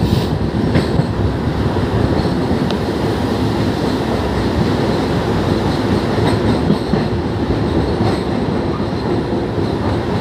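Train running across a steel truss bridge, heard from inside a moving coach: a steady, loud rumble of wheels on rails with a few faint clicks.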